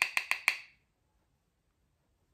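Silence: a few quick clicks in the first moment, then the sound cuts out abruptly and nothing is heard.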